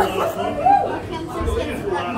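Indistinct talk and chatter of several voices in a busy room.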